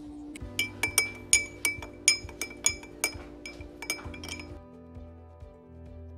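Metal spoon stirring tea in a glass mason-jar mug, clinking against the glass about three times a second, then stopping about four and a half seconds in.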